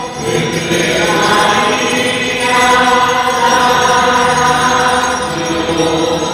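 Choir singing a slow hymn, holding long notes that change pitch every second or two.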